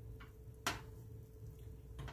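Silicone spatula stirring sauce in a stainless steel saucepan, with one sharp tick against the pan a little under a second in, over a faint steady hum.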